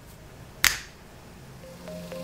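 A single sharp finger snap, a little over half a second in; soft music begins near the end.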